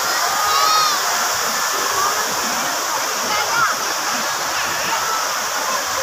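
Many tall jets of a large lakeside fountain spraying and falling back into the water, a steady rushing splash. High-pitched voices of people nearby are heard over it, most clearly about a second in.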